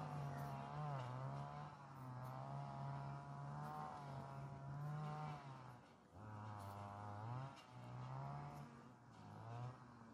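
European hornet (Vespa crabro) buzzing in flight close to the microphone over a beehive, a low droning wingbeat that wavers and slides in pitch, dipping lower and briefly breaking off about six seconds in and again near the end.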